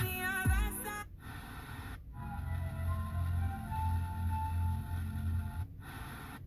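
Car FM radio playing music: a sung song for about the first second, then short dropouts as the radio is tuned between stations. Between the dropouts, other music with long held notes over a steady bass comes through.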